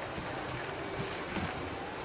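Steady rushing background noise with faint handling noise from a handheld camera's microphone as it is moved about.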